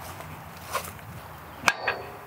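John Deere 1025R compact tractor's three-cylinder diesel idling steadily while the 120R loader's mount latches are raised by hand: a faint click about three-quarters of a second in, then two sharp metallic clicks close together near the end.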